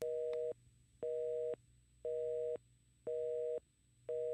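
Telephone busy signal: a two-note tone beeping on and off about once a second, each beep about half a second long, four beeps in all.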